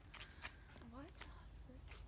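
Near silence, with faint distant voices briefly heard about a second in and again near the end.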